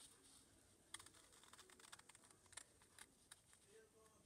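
Faint snips of small paper-crafting scissors cutting cardstock: a scatter of short, quiet clicks over near silence.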